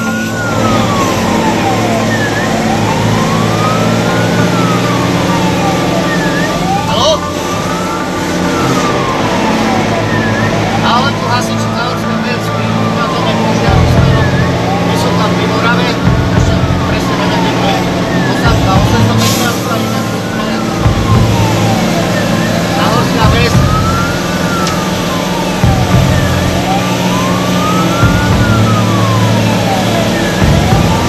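Fire engine's wailing siren, rising and falling about once every four seconds, heard from inside the moving truck over its engine running beneath.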